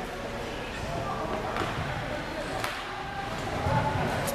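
Players' voices carrying faintly across a large gym during a stoppage in play, with two sharp knocks about a second apart near the middle.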